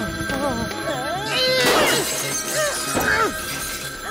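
Cartoon soundtrack of background music and vocal exclamations, with a loud crash about one and a half seconds in.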